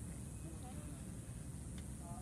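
Steady outdoor background noise: a low rumble and high hiss, with faint traces of distant voices and a faint tick near the end.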